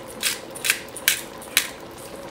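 Peppercorns being ground in a small twist-top pepper grinder: four short grinding strokes about half a second apart.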